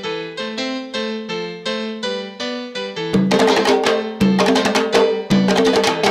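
Recorded salsa music: a repeating figure of struck notes on a keyboard instrument, joined about three seconds in by the full band with sharp percussion hits, getting louder.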